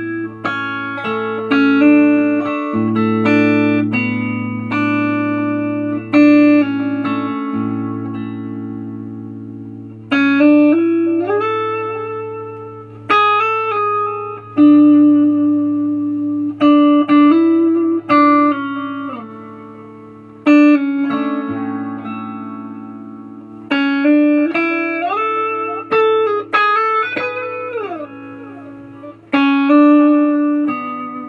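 Electric guitar with Nuclon single-coil pickups playing a slow melodic line of single notes that ring on and die away slowly, with a few sliding notes, over a steady low drone.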